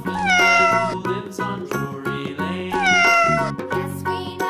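A domestic cat meowing twice, each meow a long call falling in pitch, over background music.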